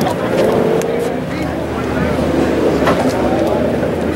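Indistinct voices of people talking nearby, over a steady low mechanical hum.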